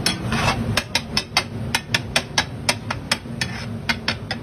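A flat metal spatula striking and scraping a large flat metal tava griddle while tava pulao is mixed on it. It is a quick, irregular run of sharp clanks, about four a second, over a steady low hum.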